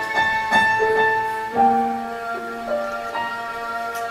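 Live instrumental music: a bowed violin holding long notes over keyboard accompaniment, the notes changing every second or so.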